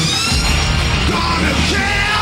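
Industrial metal band playing live and loud: distorted electric guitars and drums, with a yelled vocal over the top.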